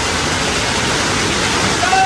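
Heavy hail falling hard, a dense, steady hiss.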